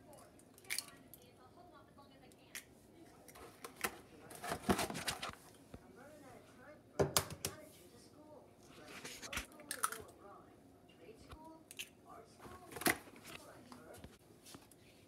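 Eggs being cracked and handled over a plastic mixing bowl: scattered sharp knocks and clicks of shell against the rim, with the loudest taps about five, seven and thirteen seconds in.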